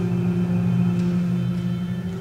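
Contemporary chamber ensemble music: a steady, sustained low drone held without a break, with fainter held tones above it.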